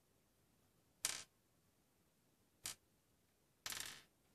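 Near silence broken by three short clicking, rustling noises, about one second in, about two and a half seconds in and just before the end, the last one the longest: handling noise from a hand holding the tablet.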